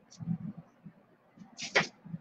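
Metal palette knife scraping through acrylic paint: a few soft knocks, then one short, sharp scrape near the end.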